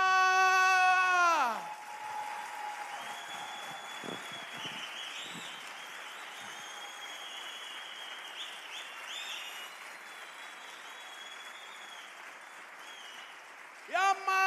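A man's long, held shout that breaks off about a second and a half in, followed by theatre audience applause that slowly dies away over the following seconds.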